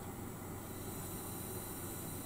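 Faint, steady hiss of gas flowing out of a propane burner, fed from an outdoor gas canister whose valve has just been opened, before ignition.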